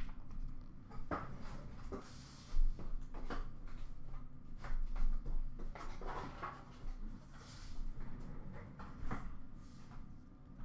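Trading cards and pack wrappers being handled: scattered light rustles, slides and taps, with a few dull bumps, the loudest about two and a half seconds in and again around five seconds.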